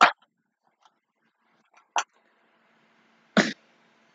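A woman's voice making three short, sharp, breathy bursts, like coughing laughs, about a second and a half to two seconds apart; the first and last are the loudest.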